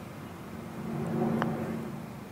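One short click of a putter striking a golf ball, about three-quarters of the way through, over low steady outdoor background ambience.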